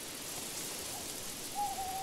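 An owl hooting: one long held hoot starting past halfway, over a faint steady night-time hiss.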